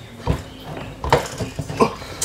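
Light metallic knocks and clinks from a washing-machine motor's stamped-steel rotor being handled on a workbench: about four irregular taps, the loudest about a second in and near the end.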